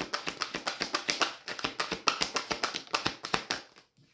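An oracle card deck being shuffled by hand: rapid light card clicks and taps, several a second, that stop just before the end.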